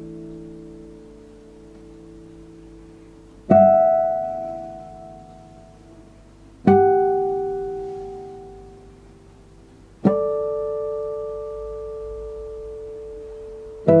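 Classical guitar by luthier Gregory Byers playing sparse chords. Each chord is struck sharply and left to ring and fade, about every three seconds, with a fourth chord right at the end.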